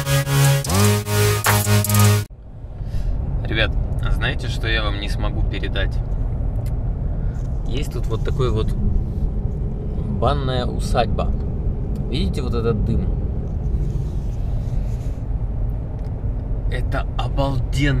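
Background music cuts off abruptly about two seconds in. After that comes the steady low rumble of a Mercedes-Benz E 220d on the move, heard from inside the cabin, with short snatches of a voice now and then.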